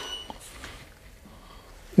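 A camera shutter fires with a click as a studio flash goes off, followed by a brief high beep as the flash signals it is recharging. After that there is only faint room tone.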